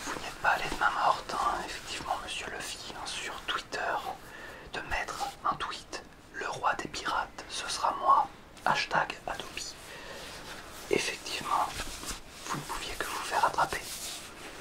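Whispered speech in French.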